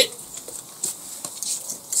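A black Labrador stepping about on concrete paving slabs, its claws giving faint scattered ticks and taps.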